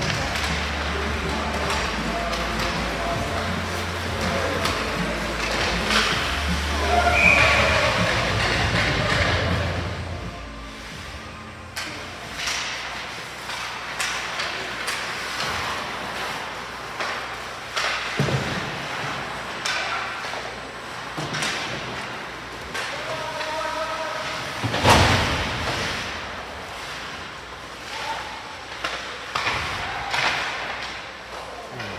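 Ice hockey game in play: sticks and puck clacking on the ice and knocking against the boards, with voices around the rink. Music plays through roughly the first ten seconds, and a single loud knock stands out about 25 seconds in.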